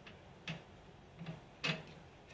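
A few faint, sparse clicks, three in two seconds with the last the loudest, from a Holden electronic distributor being turned over by hand on the bench.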